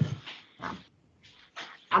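A dog barking a few short times in the background, picked up by a home-office microphone.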